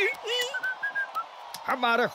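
Whistling: a cheerful tune of short, level notes in the middle. A brief voice sound with a rising pitch comes near the end.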